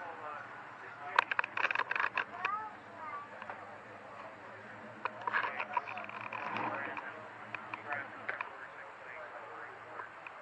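Indistinct voices of people talking nearby, in two stretches, with scattered sharp clicks and a faint steady low hum underneath.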